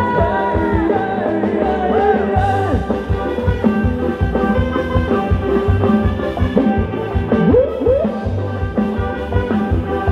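Live band playing upbeat ramwong dance music with a steady bass beat and a melody over it.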